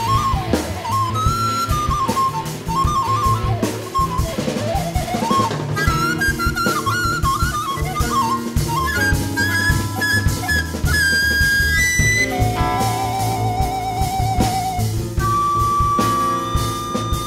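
Jazz-rock quartet playing: recorder, electric guitar, upright double bass and drum kit. A moving melody line gives way to held notes, with a wavering note past the middle and a long held note near the end.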